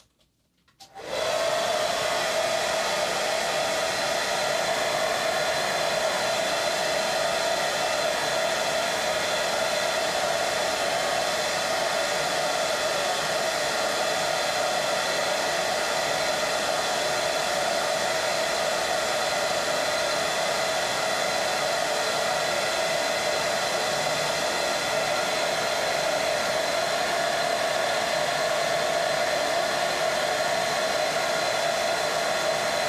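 Hair dryer switched on about a second in and running steadily, blowing air to dry freshly airbrushed paint on a miniature.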